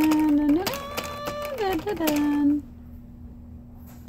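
A woman singing a wordless "dun, dun, dun" tune in held notes that step up and down, with light clicks and rattles of plastic baby toys; the singing stops about two and a half seconds in.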